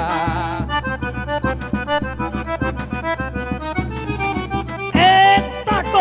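Forró trio playing an instrumental break: the accordion (sanfona) runs a fast melody over a steady beat from the zabumba drum and triangle. It opens on a held, wavering note, and a louder held note comes about five seconds in.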